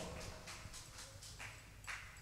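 Faint, even light tapping, about four taps a second, in a near-quiet lull between sung passages, with a couple of slightly louder taps near the end.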